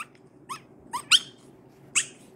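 Chihuahua puppy giving about four short, high squeaks, each rising in pitch.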